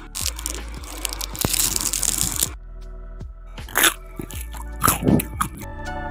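Crisp deep-fried potato snacks crunching and crackling, densely for the first couple of seconds, then two sharp crunches a second apart near the end, over background music.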